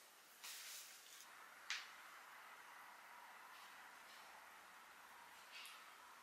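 Near silence: room tone, with a faint rustle about half a second in, a short soft click just under two seconds in, and another faint rustle near the end.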